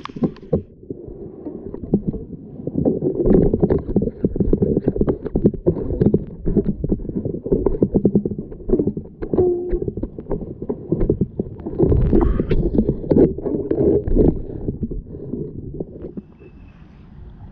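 Creek water heard through a camera held underwater: a muffled, uneven low rumble and gurgling of the current, dotted with many sharp clicks and knocks.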